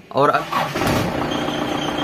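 A vehicle's engine is cranked and catches about half a second in, then settles into a steady idle.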